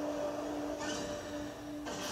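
A steady, sustained low musical tone from the anime episode's soundtrack, with a soft hissing rush from about one second in that stops shortly before the end.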